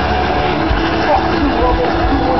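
A heavy rock band playing live at full volume, heard from within the crowd through a camera's microphone, with a voice mixed in over the band.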